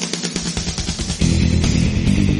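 Outro music with a steady beat. A heavier bass comes in and the music gets louder just over a second in.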